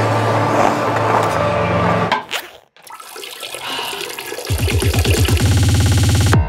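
Trailer music with sustained low tones cuts off abruptly about two and a half seconds in; a toilet flushing rushes up in the gap, and a loud rhythmic beat kicks in over it about halfway through.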